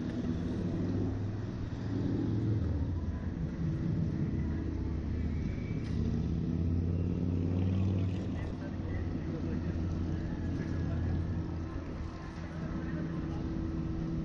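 Wind buffeting a ride-mounted camera microphone as a Slingshot reverse-bungee capsule swings and is lowered: a steady low rumble with a faint hum underneath.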